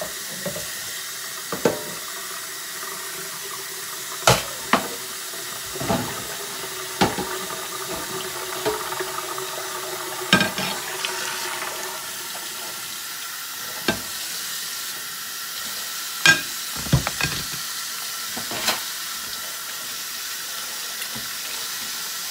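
Tap running steadily into a stainless steel sink during hand dishwashing, with about a dozen sharp clinks and knocks of dishes against the sink and each other, the loudest about four and sixteen seconds in.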